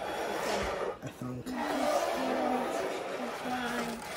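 Indistinct, low-level voices over a steady background hiss, with no clear words.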